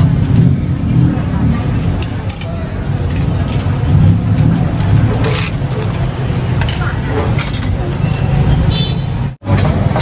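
Busy street background: a steady low rumble of traffic with indistinct voices and occasional clatter. It drops out abruptly for a moment near the end.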